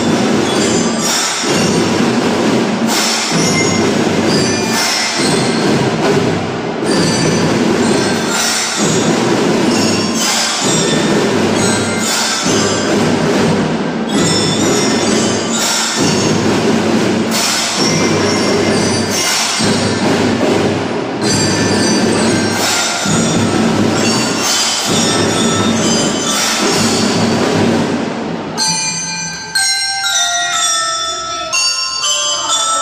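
A children's school drum band playing loudly: a dense mix of drums and metal percussion over mallet bells, in repeating phrases of about two seconds. Near the end the ensemble drops away to clear, ringing bell-like notes.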